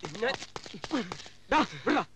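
Several short shouted cries from men, with a quick patter of footsteps slapping on a paved road between them.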